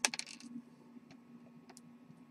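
A brief clatter of small hard objects on a wooden desk: a quick burst of rattling clicks in the first half second, then a few light ticks.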